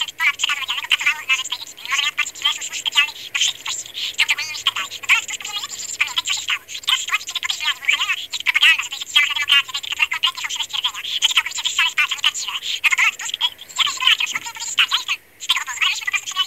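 A high-pitched, thin voice chattering almost without a pause, with no low tones; the words cannot be made out.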